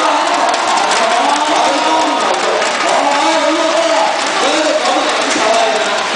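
Performers' voices amplified through microphones and a PA, echoing in a large hall, with audience noise beneath.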